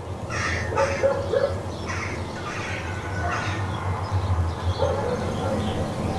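Outdoor ambience from a drama soundtrack: birds giving short, irregular calls over a steady low hum.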